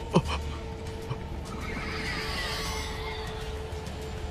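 Film sound design: a high, wavering creature cry swells and fades in the middle, made for the giant python, over a sustained low musical drone. A brief falling groan comes just after the start.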